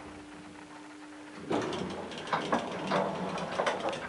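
Elevator hum that stops about a second and a half in, then a run of mechanical clicks and rattles from the elevator door's lock and lever handle as the door is worked open.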